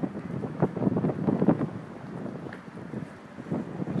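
Wind buffeting a handheld camera's microphone, rising and falling, quieter for a moment past the middle.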